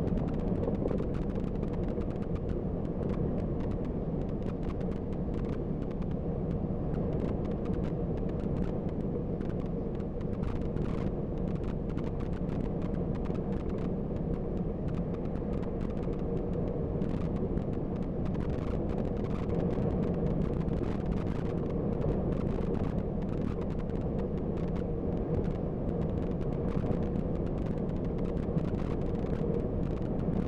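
Steady drone of a bus cruising on a motorway, heard from inside the cabin: engine and tyre rumble with a faint steady hum and many light clicks and rattles.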